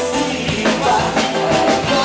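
A live band playing: a man singing over electric guitar and a drum kit.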